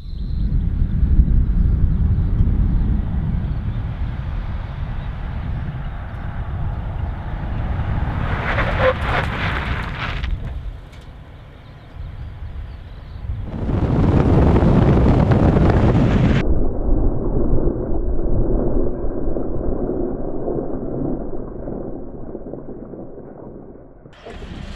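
Suzuki Grand Vitara SUV braking hard on asphalt from 60 km/h with ABS engaged, heard as a loud rumble of tyre, road and wind noise across several shots. The noise is harshest about 14 to 16 seconds in, then turns muffled.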